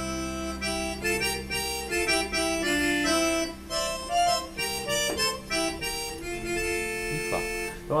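Yamaha arranger keyboard playing an accordion voice: a melody in parallel thirds over a sustained left-hand chord.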